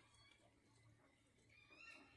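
Near silence: faint background hum, with a faint high rising sound near the end.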